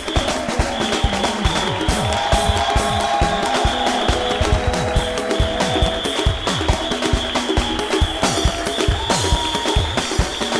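Live band playing an upbeat instrumental groove with no vocals: dense drumming with talking drums whose strokes bend down in pitch, under held keyboard-like melody notes.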